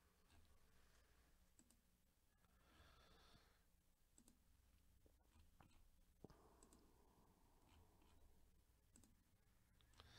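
Several faint computer mouse clicks, a second or two apart, over near silence.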